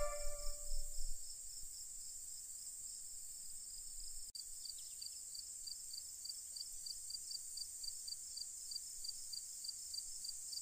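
Faint crickets chirping in a steady high pulse about three times a second over a thin high hiss. The last violin note of the music dies away in the first second.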